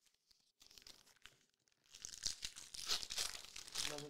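Foil wrapper of a trading-card pack being torn open and crinkled: a faint crackle first, then a louder stretch of tearing and crinkling from about two seconds in.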